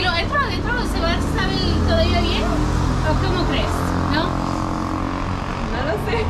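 Talking over the low, steady rumble of a motor vehicle's engine running close by.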